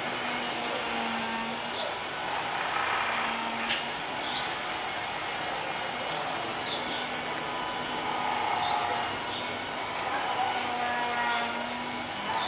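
Outdoor ambience: birds giving short, high chirps every second or two over a steady hiss, with a low hum that comes and goes in stretches of about a second.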